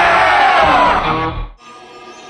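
Hip-hop beat with heavy bass under sampled voices shouting together. It cuts off abruptly about a second and a half in, leaving a quiet tail.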